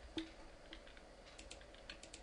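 Faint clicks of a computer mouse and keyboard: about five short, sharp clicks, the first, a fifth of a second in, the loudest, over a low steady hum.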